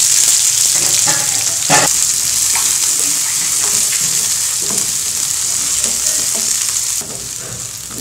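Sliced onions, green chillies and curry leaves sizzling in hot oil in a nonstick frying pan while being stirred with a wooden spatula. The sizzle is loud and eases off gradually, dropping a step near the end, with a couple of spatula knocks against the pan early in the stirring.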